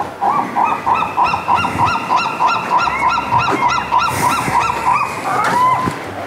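Geese honking: a long, rapid run of honks, several a second, that stops shortly before the end.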